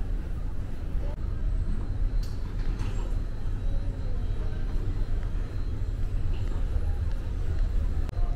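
Airport terminal ambience: a steady low rumble with faint voices of travellers in the background.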